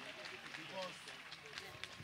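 Faint, indistinct voices of a large outdoor crowd.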